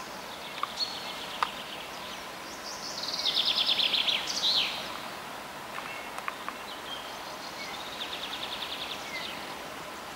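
Songbirds singing outdoors over a steady background hiss: a trill of rapidly repeated high notes that falls in pitch and ends in a flourish about three seconds in, scattered short chirps, and a softer trill near the end.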